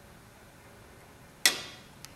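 A single sharp click about one and a half seconds in, with a short ringing tail: a metal saucepan knocking against a plastic Petri dish while growing medium is poured into it. Otherwise quiet room tone.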